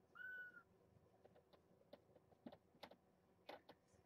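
A kitten's short, high mew just after the start, then a run of faint, irregular clicks and taps from the cats moving about in the pen.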